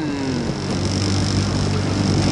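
Motor of a small coaching launch running steadily at cruising speed, a low even hum under a steady hiss.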